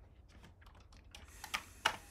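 Typing on a Commodore 64 keyboard: a quick run of key clicks, the two loudest near the end.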